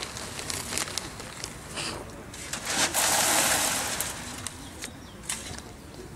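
Long-handled garden tools scraping through loose, dry soil, with scattered clicks of grit and stones. About three seconds in comes a louder rushing scrape of moving soil that lasts about a second.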